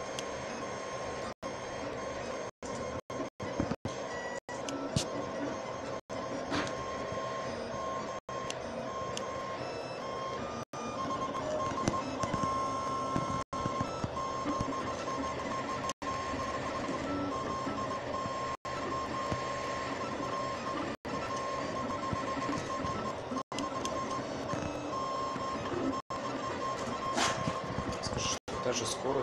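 Diode laser engravers on 3D-printer gantries running an engraving job: motors and cooling fans give a steady whine around a single high tone, with fainter tones shifting as the heads move. The sound cuts out briefly many times.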